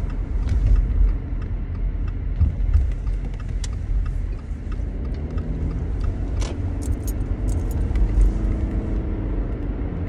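Steady low road and engine rumble inside a moving car's cabin, with scattered small clicks and light rattles.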